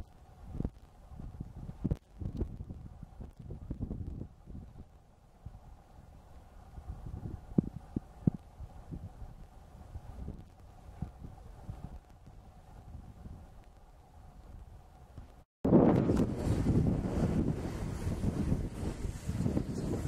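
Wind buffeting the camera microphone in uneven low gusts, with a few brief knocks. After a sudden cut about three-quarters of the way through, the wind noise is much louder and fuller.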